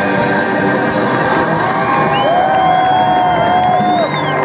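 Live rock band's final chord ringing out through the PA while the festival crowd cheers and whoops. A long, high whistle from the audience starts about halfway through.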